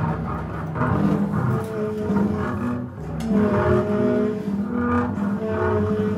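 Live free-improvised jazz by tenor saxophone, bowed double bass and drums: long held saxophone tones over bowed bass notes, with scattered drum and cymbal strokes played with sticks.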